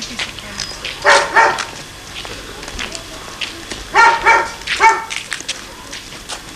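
A dog barking: two barks about a second in, two more about four seconds in, then one more.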